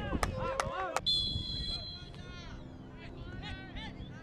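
Players shouting on a football pitch, with a referee's whistle blown once, briefly, about a second in; fainter shouts and calls follow.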